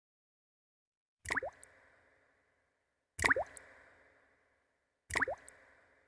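Three short droplet-like 'plop' sound effects about two seconds apart, each a sharp click followed by a quick falling pitch, as part of a film song's recorded intro.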